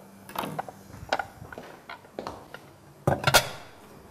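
Scattered light knocks and clinks of kitchen utensils, a knife and plate handled on a wooden cutting board, with a louder clatter about three seconds in.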